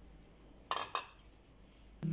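Two short clinks of kitchenware, about a quarter second apart, as a bowl is set down on the counter beside a steel grinder jar; otherwise quiet.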